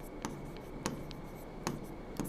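Marker pen writing on a board: quiet scratching strokes with a few light taps as the pen meets the surface.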